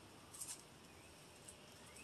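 Near silence: room tone, with a faint brief rustle about half a second in.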